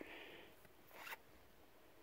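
Near silence, with one faint, brief rustle about a second in.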